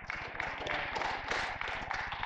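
Paper pages of a Bible rustling as they are leafed through to find a passage.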